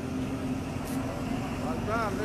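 Outdoor city-square ambience: a steady low rumble like traffic with a steady hum throughout, a brief hiss about a second in, and a voice beginning faintly near the end.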